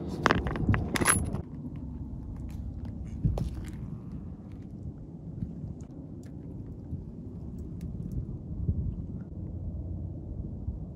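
A few sharp metallic clinks in the first second and a half, typical of loose bolts and driveshaft flex-disc hardware knocking together as they are handled, then a steady low rumble of wind on the microphone.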